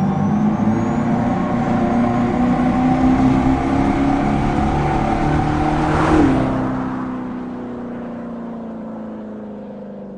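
Dodge Charger Daytona EV's Fratzonic Chambered Exhaust, a speaker-generated V8-style exhaust note, building as the car comes on. The car passes close about six seconds in, with a drop in pitch, and the note then holds lower and fades.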